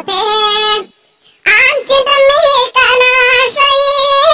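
A high-pitched singing voice holding wavering notes. It breaks off for about half a second about a second in, then carries on.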